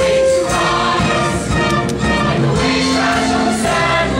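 A large stage ensemble of mixed voices singing together in chorus in a musical-theatre number.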